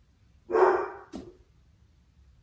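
A dog barking in the room: one loud bark about half a second in, then a shorter, weaker one just after.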